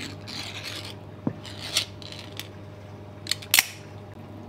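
Ring-pull lid being peeled back off a tin of Spam: a series of sharp metallic clicks and scrapes, the loudest near the end.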